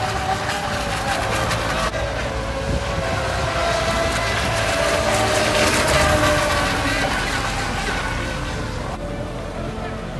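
Brushless electric RC speedboats racing, their motors giving a high whine that drifts slowly in pitch over a hiss of spray. It is loudest about six seconds in, as one passes close.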